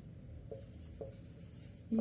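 Felt-tip marker writing on a whiteboard, faint, with two light taps of the tip about half a second apart.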